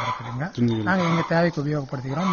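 A man talking in continuous speech; only speech is plainly heard.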